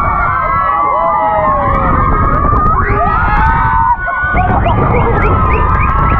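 A crowd of riders screaming and shouting together on a swinging-ship amusement ride, with several short rising yells about five seconds in. A low rumble of wind on the microphone runs underneath.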